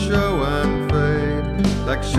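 Classical nylon-string guitar (an Admira Artista) playing chords under a solo voice singing a verse of the song.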